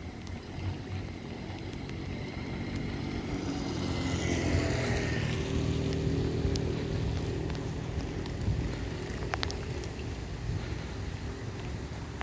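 A motor passing by: a low engine hum that swells to its loudest about four to five seconds in, with a faint falling whine as it passes, then fades slowly, over a low rumble of wind on the microphone.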